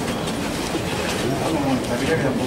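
Steady scraping shuffle of the costaleros' feet on the street as they carry a Holy Week float, with low voices from the crowd underneath.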